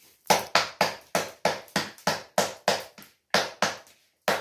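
Hands patting and slapping roti dough flat on a flour-dusted plate: a steady run of about a dozen sharp slaps, roughly four a second.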